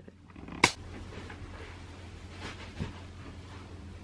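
A single sharp knock about half a second in, then soft handling noise over a low steady hum as a cot bed's spring mattress is lifted and lowered into the cot frame.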